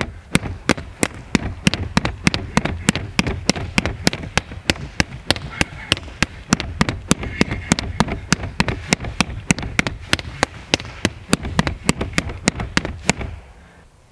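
Rattan Kali sticks repeatedly striking a torso-shaped striking dummy in alternating double-stick circular strikes. They give sharp smacks about four a second in a steady rhythm, stopping shortly before the end.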